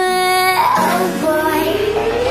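Hindi film pop song: a high female voice holds a long steady note, then sings a short phrase and a slow rising glide over the backing track.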